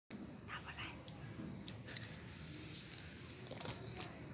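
Faint, low voices with a few sharp clicks, the loudest near the end.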